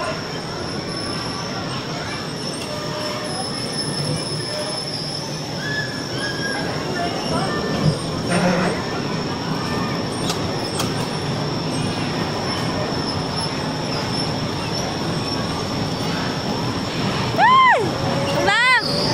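Electric bumper cars running on the ride floor: a steady whine over rolling noise, with a couple of knocks about eight seconds in and a short rising-and-falling squeal near the end.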